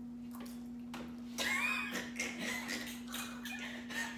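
Quiet eating sounds at a table: instant noodles being slurped and chewed in soft, irregular bursts starting about a second in, over a steady low hum.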